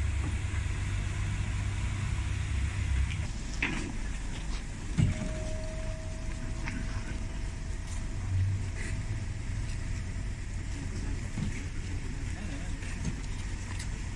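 A hearse's engine idling close by, its low rumble heaviest in the first few seconds. A couple of sharp knocks come around the time its rear door is opened, the loudest about five seconds in.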